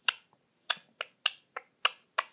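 Fingertip tapping a touchscreen button: six short, sharp clicks, one at the start, then five in quick succession about three a second.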